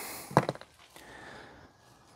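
A man's short murmured syllable about half a second in, then faint rustling as leafy cuttings are handled.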